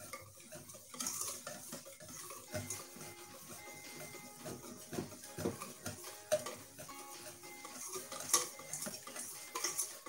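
A whisk beating eggs and brown sugar in a stainless steel bowl set over a pan of steaming water, its wires tapping and scraping against the metal in quick irregular clicks while the sugar dissolves.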